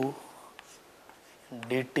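Chalk writing on a chalkboard: faint scratching strokes in a short pause between a man's words.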